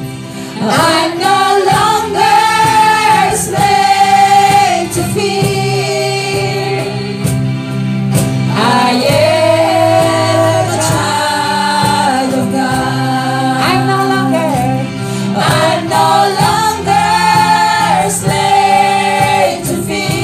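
A group of women singing a gospel worship song together in held phrases, accompanied by strummed acoustic guitars, an electronic keyboard and a cajón.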